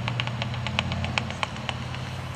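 Bat detector's speaker giving a quick, slightly uneven run of clicks, about seven a second, as it picks up a bat's echolocation calls overhead. A steady low hum lies underneath.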